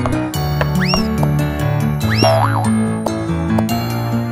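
Bouncy children's cartoon music with steady bass notes and light percussion. Springy glide sound effects rise and fall in pitch about a second in and again about two seconds in, followed by a short wavering glide.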